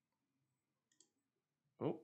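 A near-silent pause with one faint, sharp click about halfway through, like a computer mouse being clicked. A man says "oh" just before the end.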